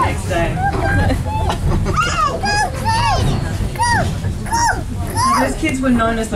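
Toddlers squealing and babbling playfully in a string of short, high, rising-and-falling cries, over a steady low rumble.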